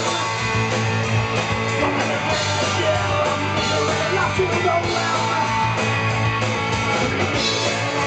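Live punk rock band playing, electric guitar to the fore over bass and drums.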